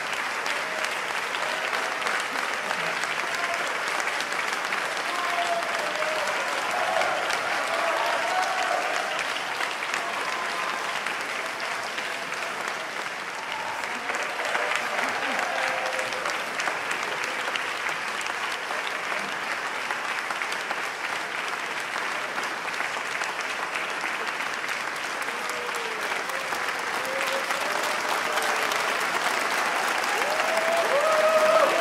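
Audience applauding steadily, with scattered voices heard over the clapping; the applause swells a little near the end.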